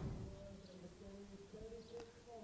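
Faint, distant human voices calling out in drawn-out notes across the ground, with a soft knock at the start.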